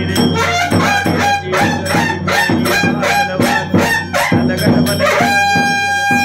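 Temple aarti music: percussion keeping a quick, even beat under pitched instruments. Near the end comes one long, steady blast on a curved brass horn.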